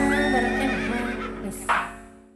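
Live dangdut koplo band's closing notes ringing out and dying away, with held keyboard and instrument tones and a few wavering, gliding high notes. A brief noisy burst comes near the end as the sound fades.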